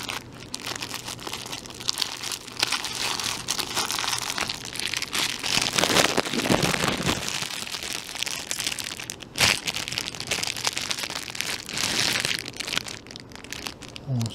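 Clear plastic packaging bags crinkling and crackling as they are handled and opened, with a few louder crackles about six and nine and a half seconds in.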